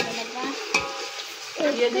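Metal spoon stirring and scraping inside a steel cooking pot over a wood fire, with a steady sizzle of frying from the pot. There are a couple of sharp scrapes, one at the very start and one under a second in.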